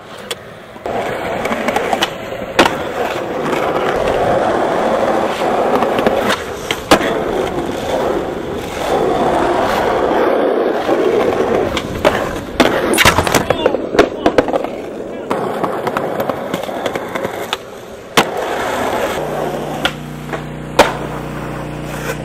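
Skateboard wheels rolling over concrete, broken by many sharp pops and clacks of the board during tricks and landings, and a grind along a ledge. A steady low hum comes in near the end.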